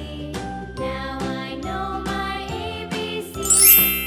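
Light children's background tune with a steady melody. Near the end a bright, rising sparkly chime effect sweeps up in pitch and is the loudest sound.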